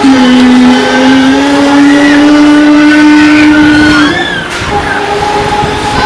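A single long held tone from the Break Dancer ride's loudspeakers, rising slightly in pitch for about four seconds and then breaking off, with steadier, fainter tones after it.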